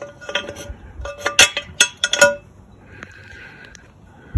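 Small metal parts of an outboard remote control box (gears, shaft and bushings) clinking together as they are handled, several light clinks with a short ring in the first two seconds or so, followed by a faint hiss.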